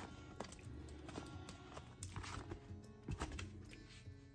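Faint background music, with a few soft knocks and plops spaced about a second apart as cubes of Velveeta are dropped by hand into milk in a slow-cooker crock.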